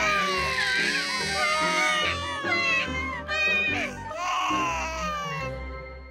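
Exaggerated bawling like a crying baby, the cartoon voice of a weeping dog, over background music. It comes in long wails that slide down in pitch, breaks off a little past the middle, wails again and fades near the end.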